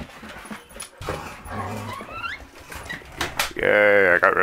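Dogs moving about on the floor, with a short rising whine from one of them about halfway through and a few sharp knocks after it. A man's voice calls near the end.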